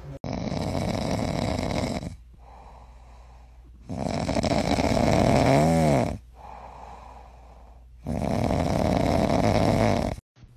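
Small short-haired dog snoring loudly in its sleep: three long snores about four seconds apart, with quieter breaths between them. The middle snore ends in a brief rising-and-falling pitched note.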